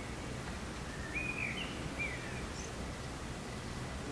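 Quiet room tone: a steady low hum, with a few brief, faint, high chirping squeaks between about one and two and a half seconds in.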